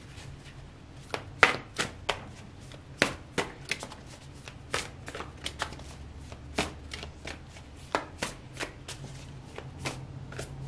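A large tarot deck being shuffled by hand, giving irregular sharp card slaps and taps, about two a second, the loudest about a second and a half in.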